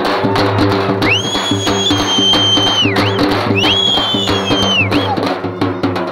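Festival drums beaten in a fast, steady rhythm. A long, high, level whistle sounds over them twice, starting about a second in and again about three and a half seconds in.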